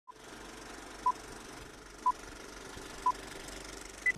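Four short electronic beeps, all at one pitch and evenly spaced a second apart, over a steady hiss: a countdown-style tone sequence at the start of a video intro.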